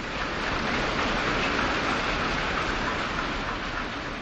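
Audience applauding, swelling in the first second and easing off near the end.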